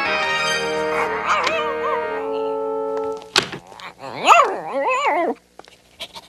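Cartoon background music, then a sharp thump and a dog's loud, whining yelp that slides up and down in pitch about four seconds in.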